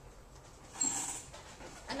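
A short, sharp breath of air close to the microphone, about a second in, as the speaker pauses before his next sentence.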